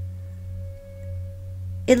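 A steady low hum with a faint, sustained ringing tone above it that fades out, until a woman's voice begins near the end.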